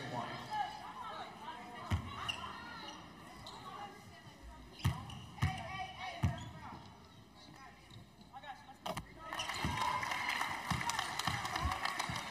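Basketball bounced on a hardwood court in single spaced-out bounces during a free-throw routine, over faint arena voices. Near the end the arena crowd noise swells into cheering as the free throw goes in.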